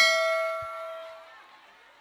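Bright bell-chime ding of a subscribe-animation sound effect, marking the notification bell icon being clicked. It sounds at the start, then rings out and fades away over about a second and a half.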